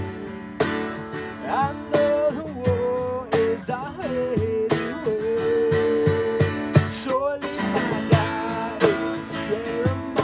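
A worship song played live on acoustic guitars, strummed in a steady rhythm, with a singing voice holding long, bending notes over it.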